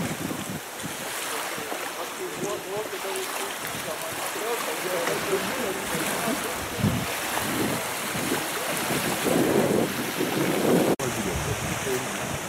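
Strong wind rushing over the microphone, with small choppy waves lapping in shallow lake water; the sound breaks off sharply about a second before the end.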